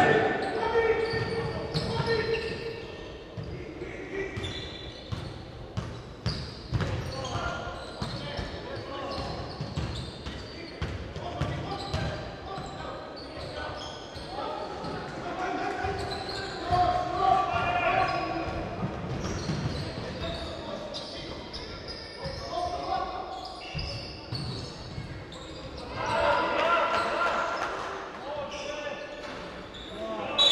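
A basketball being dribbled and bouncing on a hardwood gym floor during live play, a series of irregular thuds. Players' and spectators' voices call out around it, echoing in a large sports hall, loudest near the end.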